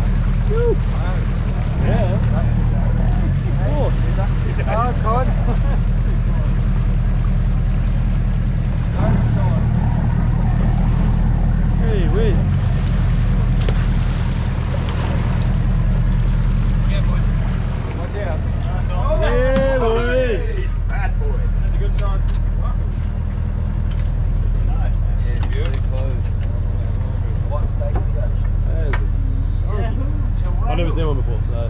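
A charter boat's engine idling with a steady low drone throughout. Voices call out over it, loudest about twenty seconds in.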